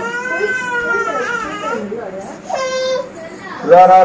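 An infant crying in a hanging cloth cradle: high-pitched, wavering fussing cries, a short cry, then a loud, long wail starting near the end.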